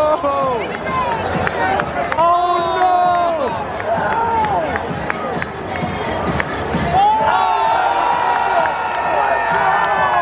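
Large stadium crowd, with nearby fans shouting and cheering in long, drawn-out calls over the steady noise of the crowd.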